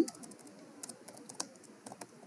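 Computer keyboard typing: a few faint, irregular keystrokes.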